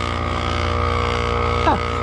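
Small portable electric tire inflator running with a steady motor hum, pumping air into a nearly flat car tire that reads about 5 psi.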